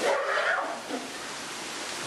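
A gorilla giving one short, harsh cry of about half a second at the start, over a steady rushing background noise.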